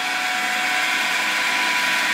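Homemade 12-inch lapidary flat lap running steadily: its 1/2 HP Leeson electric motor turning at about 1,750 rpm, belted down through pulleys to the steel disc. An even hum and hiss with a faint steady tone, unchanging.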